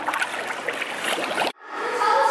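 Swimming-pool water splashing and sloshing right at the microphone, cut off abruptly about one and a half seconds in.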